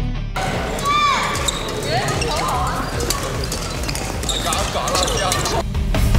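Badminton hall ambience: many sharp racket-on-shuttlecock hits and footfalls, with sports shoes squeaking on the court floor about a second in and again around two seconds, and voices, all echoing in the large hall.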